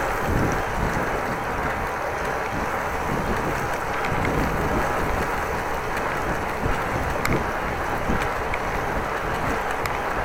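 Steady wind and rolling noise of a bicycle ride, picked up by a camera mounted on the bike, with a few faint ticks along the way.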